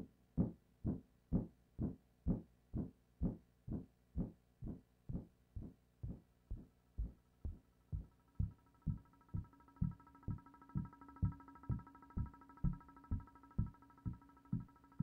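Drum machine kick drum beating steadily about twice a second. From about eight seconds in, a held synthesizer chord fades in under the beat.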